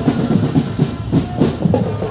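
Marching drum band's drums playing a fast, steady rhythm of repeated strikes.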